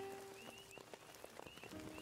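Frogs calling: a steady string of short, high, rising peeps, several a second, over faint sustained notes of background music.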